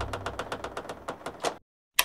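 Title-card sound effect: a rapid run of dry ticks, about a dozen a second, fading away over a second and a half, then a single sharp click near the end.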